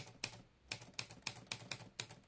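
A faint run of quick, irregular clicks, about five or six a second, like keys being typed.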